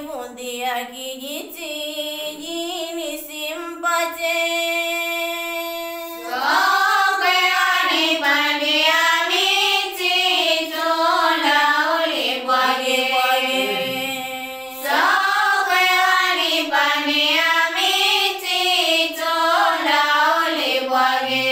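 A young female voice singing a melodic song with no instruments, sliding and wavering through long drawn-out notes. It is softer at first, with one long held note, and grows louder about six seconds in.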